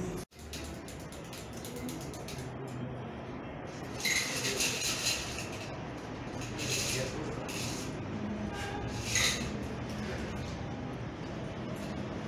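Bottles and glassware being handled at a bar counter: several short clinking, rattling bursts, the longest and loudest about four seconds in, over a low murmur of indistinct voices.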